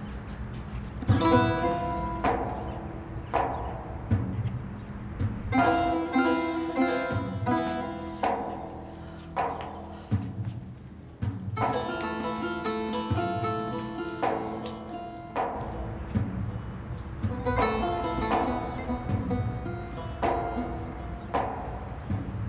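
Background drama score of plucked string notes played in short clusters that ring and fade, over a low sustained drone.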